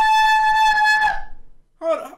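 A single long, high note held steady in pitch, bright and full of overtones, fading out about a second in. A brief vocal sound follows near the end.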